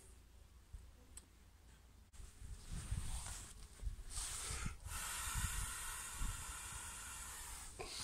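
Nylon sleeping bag rustling and swishing as it is handled and lifted, with a few soft low thumps. It starts about two and a half seconds in, after a near-silent opening, and grows to a steady rustle.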